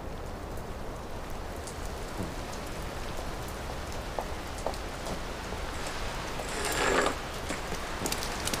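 Steady light rain with scattered drips, and a short louder swell of noise about seven seconds in.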